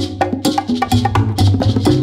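Latin percussion music with no voice: sharp hand-percussion strokes in a quick, steady pattern over a low bass line and mid-range pitched chords.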